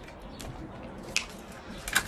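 Quiet room tone with a few light clicks, the sharpest about a second in and a couple more near the end.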